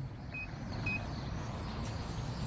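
Gate-entry keypad beeping as a code is punched in: two short high beeps about half a second apart, over a steady low rumble.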